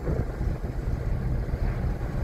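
1960 Chrysler 300-F underway: a steady low rumble of engine and road noise, with wind buffeting the microphone.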